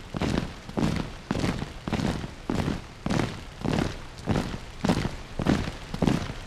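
A steady rhythm of heavy thuds, about two a second, each dying away quickly.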